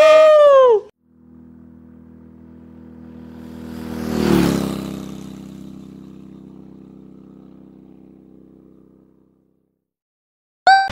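A vehicle engine passing by: a steady engine note swells to its loudest about four seconds in, with a whoosh and a drop in pitch as it passes, then fades away. It opens with the end of a drawn-out, falling shout.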